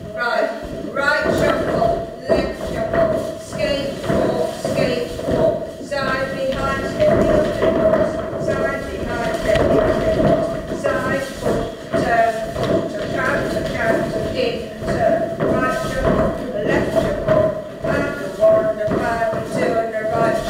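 A group of line dancers' feet stepping and shuffling on a wooden hall floor, with a steady tone and a voice going on over the steps throughout.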